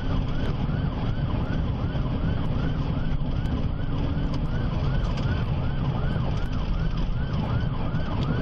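Patrol car siren heard from inside the cruiser at highway speed, sweeping up and down about twice a second. Under it runs the loud, steady rumble of the engine and tyres at about 80 mph.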